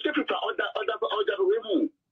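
Speech only: one person talking rapidly in a radio talk-show discussion, stopping just before the end.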